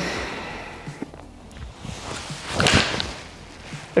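Golf iron swung through, with a rising swish about two and a half seconds in, followed at once by the short sharp strike of the clubface on a ball sitting on a turf hitting mat.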